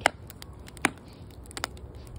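Split firewood logs burning in a metal fire pit, crackling with a few sharp pops: a loud one at the very start, another just under a second in, and smaller ticks later.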